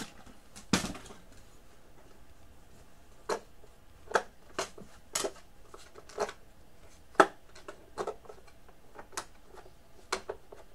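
About ten sharp plastic clicks and knocks at irregular intervals as a portable battery-powered radio cassette player is handled: its battery compartment is closed up and its controls are worked.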